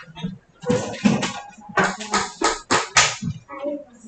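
Speech: a voice giving a few short, choppy syllables in reply to a question.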